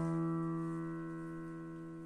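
A held chord on a digital piano, slowly fading.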